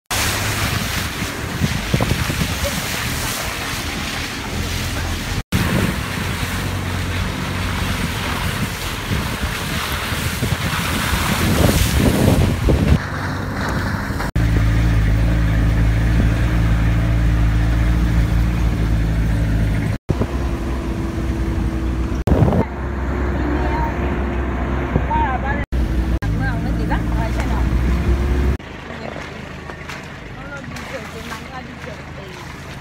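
A vehicle driving on a muddy dirt road, heard in several short clips cut one after another: rough, noisy stretches with wind on the microphone, and a steady low engine hum in the middle.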